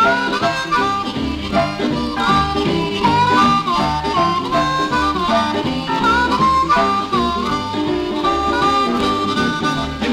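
Instrumental break of a blues song: a lead instrument plays a line of held and bent notes over a steady bass and rhythm backing, with no singing.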